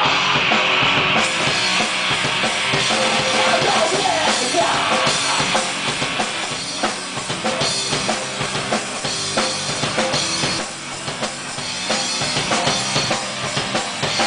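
Live rock band playing loud, with the drum kit prominent. From about halfway through, sharp drum hits stand out more against the rest of the band.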